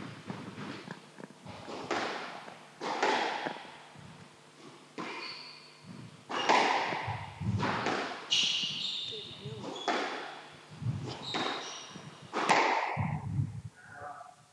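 Squash rally: the ball is struck by rackets and smacks off the court walls in a string of sharp, irregular hits, each with a short echo. Shoes squeak on the wooden floor in between the hits.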